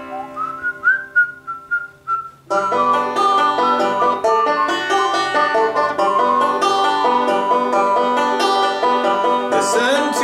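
Banjo music: a chord rings under a short whistled melody, then about two and a half seconds in steady banjo strumming and picking comes back in, running through a G–D–G chord progression.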